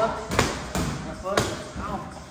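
Boxing gloves striking training pads: about three sharp smacks, with voices in the background.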